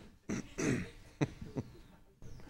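A man clearing his throat with a few short coughing sounds close to a handheld microphone.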